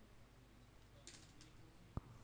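Near silence over a low hum, with two faint clicks of computer input about a second in and one sharper click just before the end.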